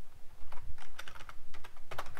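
Typing on a computer keyboard: a run of irregular keystrokes as a line of code is entered.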